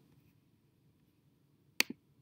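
Near silence, then a sharp computer mouse click near the end: a quick double tick as the button is pressed and released.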